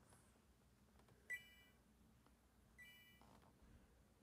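Two short electronic beeps from a phone, about a second and a half apart, with near silence around them.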